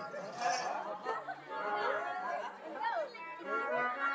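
Voices talking, with held electronic keyboard notes sounding under them, most clearly near the end.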